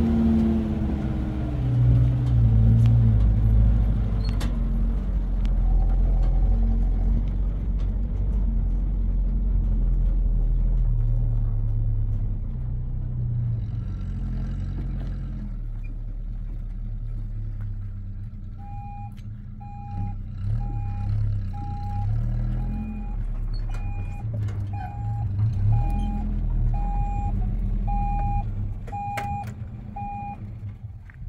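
Pickup truck engine running, its pitch falling over the first couple of seconds. From about two-thirds of the way through, a steady electronic warning beep from the truck repeats somewhat under twice a second over the engine.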